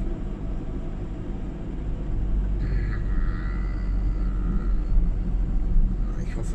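Ford Transit 2.4 TDCi four-cylinder diesel van running on the road, with engine and road rumble heard inside the cab, growing louder from about two seconds in as it is gently accelerated. The engine is being nursed along below 2000 rpm with a fault the owner puts down to a clogged diesel filter, which drops it into limp mode under too much throttle. A faint high whine runs through the middle.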